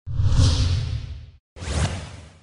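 Two whoosh sound effects for an animated logo transition, the first about a second and a half long with a deep rumble under it, the second shorter, starting right after.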